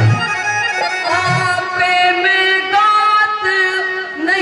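Harmonium playing a melody of long, steady held notes that step from one pitch to the next, the accompaniment of a Haryanvi ragni folk song, with a few low drum thuds in the first second or so.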